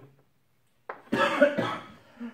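A man coughs, a loud burst about a second in.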